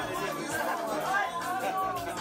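A song playing with people chatting over it.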